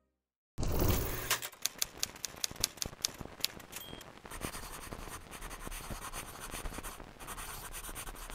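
After a brief silence, a scratchy burst with a low rumble gives way to a quick irregular run of sharp clicks and crackle lasting about two seconds. A short high beep follows, then a steady crackling hiss with a low hum underneath.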